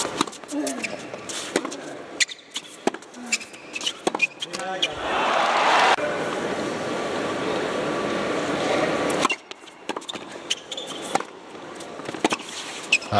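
Tennis played in an indoor arena: sharp racket strikes on the ball during a rally, then crowd applause about five seconds in that lasts about four seconds, then the ball bounced on the court before the next serve.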